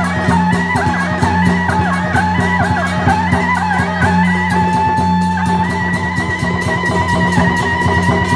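Loud Taiwanese temple-procession music: a wavering, sliding melody over quick, even percussion beats, with a constant low hum beneath.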